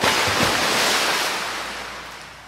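A hissing wash of noise that starts as the music cuts off and fades away steadily over about two seconds.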